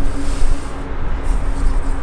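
The rear bionic flaps of the Mercedes Vision AVTR concept car moving, with a steady low hum over a loud low rumble.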